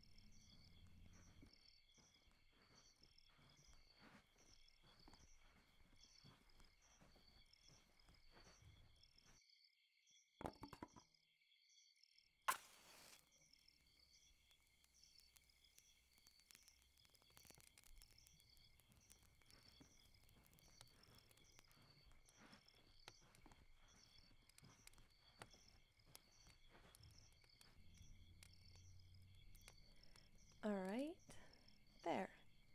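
Faint sounds of a small wood fire being lit: scattered light clicks and knocks, a short rustle about ten seconds in and a sharp strike a couple of seconds later. Behind them runs a steady, evenly repeating high chirping of crickets.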